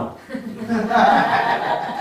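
Laughter: chuckling mixed with speech, picked up through a microphone.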